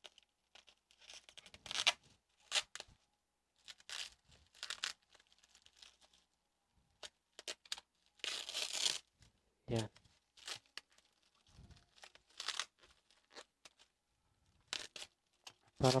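Sticky packing tape being peeled off plastic bubble wrap in short, irregular rips, with the wrap crinkling; the longest rip comes about eight seconds in.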